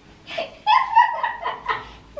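A woman's high-pitched laugh, starting about half a second in and fading near the end.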